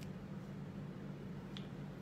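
Two small sharp clicks from a hinged jewellery box being handled, one at the start and a sharper one about a second and a half in, over a steady low hum.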